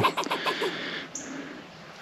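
A single short, high bird chirp about a second in.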